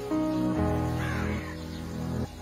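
Background music of slow, held chords that change every half second or so, with a short bird call about a second in.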